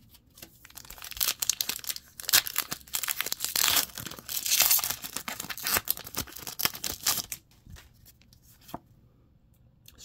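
Plastic-foil Pokémon booster pack wrapper being torn open and crinkled by hand: a dense run of crackling tears lasting several seconds. It goes quiet about seven seconds in, with one small click near the end.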